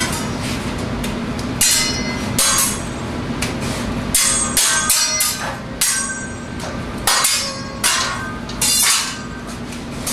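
Metal spatula striking a flat-top griddle: about fifteen ringing metallic clanks at an irregular pace, starting about a second and a half in, over a steady low hum.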